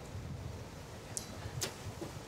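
Outdoor ambience with a low rumble of wind on the microphone, and a few sharp clicks in the second half.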